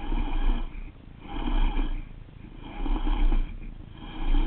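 Baitcasting reel being cranked in short bursts, about one every second and a half, its gear noise picked up close by the rod-mounted camera.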